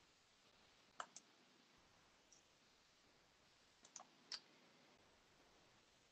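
Near silence with a few faint, short clicks: a pair about a second in and a small cluster of three around four seconds in.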